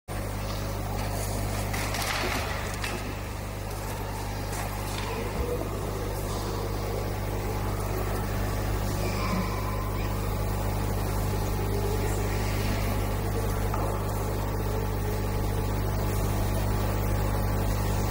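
A steady low hum that holds one even pitch throughout, with a few faint rustles of large book pages being turned.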